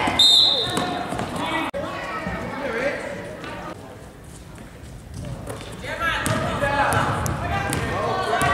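A referee's whistle blows once, briefly, just after the start, stopping play. Voices of players and spectators follow, with a basketball bouncing on the gym floor.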